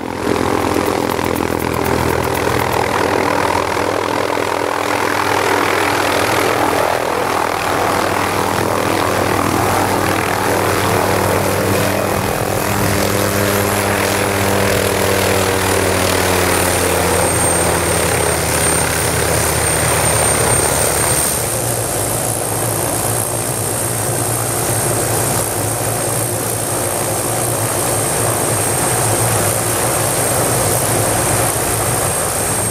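Small turbine helicopter (Hughes 500 type) running close by: a steady rotor beat with a high turbine whine above it. Through the middle the rotor tones slide down in pitch and the whine drops and then holds. About two-thirds through the low rumble eases as the helicopter settles on the ground with its rotor still turning.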